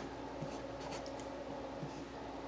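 Close-up eating sounds: short soft clicks and scrapes of chewing and a plastic fork working food on a plate, over a steady low hum.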